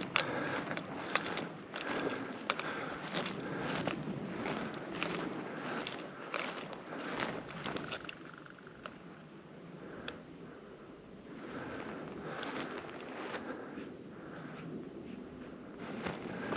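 Footsteps of a person walking through dry grass and brush, about two steps a second, softer for a few seconds past the middle.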